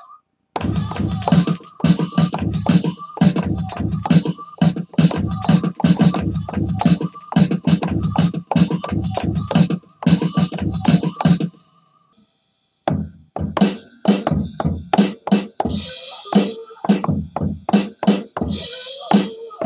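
Drum samples played live on an Akai MPC's pads in quick succession, about three or four hits a second: each pad press fires a kick or snare and each release a short vocal snippet, giving a dense, stuttering, scratch-like pattern. The playing stops briefly near the two-thirds mark, then resumes with lighter, brighter hits.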